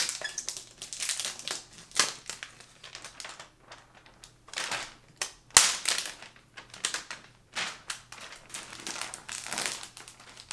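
Clear plastic protective wrap being peeled and pulled off a new iMac's screen and stand, crinkling and rustling in irregular bursts, with one sharp crackle a little past halfway.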